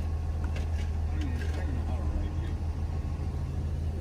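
Steady low hum of an idling vehicle engine, with faint voices talking underneath.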